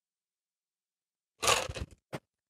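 Silence, then near the end a short clatter of ice and metal from a cocktail shaker tin as a shaken drink is strained into an ice-filled glass.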